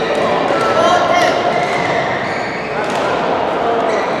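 Badminton doubles rally on an indoor court: racket hits on the shuttlecock and shoe squeaks on the court floor, with voices echoing in the large hall.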